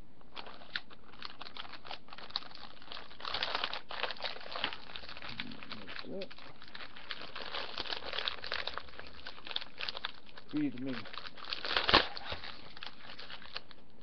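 A plastic Oreo cookie package crinkling as it is handled and opened, with one sharp snap about two seconds before the end.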